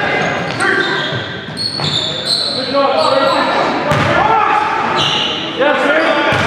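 Live sound of an indoor basketball game: a basketball bouncing on the hardwood court, short high shoe squeaks, and players' voices calling out, all echoing in a large gym.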